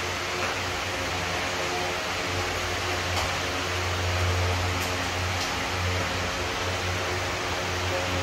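Steady electric fan running: a low hum under an even rush of air, with a few faint ticks around the middle.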